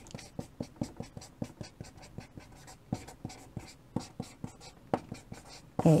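Chalk writing on a chalkboard: a quick run of short taps and scratches, about four a second, as characters are stroked onto the board.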